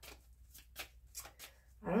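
A deck of tarot cards shuffled by hand: a handful of short, soft rustles and flicks as the cards slide against each other.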